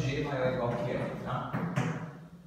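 A man's voice speaking in low, running talk.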